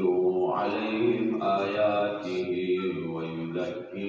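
A man chanting in long, drawn-out melodic phrases, in the style of a religious recitation, with a short pause just before the end.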